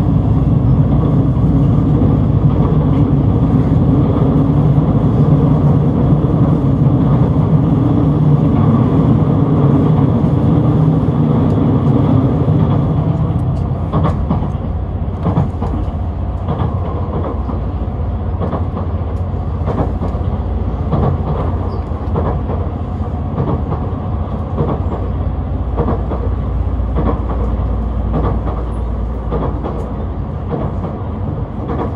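Running noise of a JR Central HC85 series hybrid diesel express train heard from inside the passenger car. A heavy low drone fills the first dozen seconds, then eases off a little, and from about 14 seconds in there are repeated clicks from the wheels over the rail joints.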